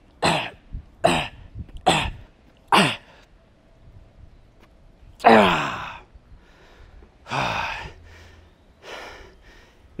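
A man's short, forceful exhales, about one a second, as he strains through resistance-band reps, then a longer, louder voiced exhale falling in pitch about five seconds in, and two weaker breaths after it.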